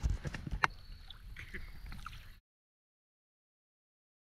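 Scattered knocks, bumps and clicks of handling in a small aluminum boat, heaviest at the start and thinning out, then the sound cuts off to dead silence about two and a half seconds in.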